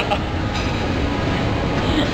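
Steady low rumbling background noise of a gym, with no distinct knocks or clanks.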